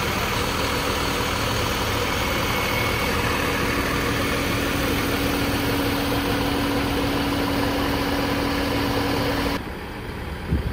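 Fire engine's diesel engine running steadily, with a steady droning tone over it; the sound drops away suddenly near the end.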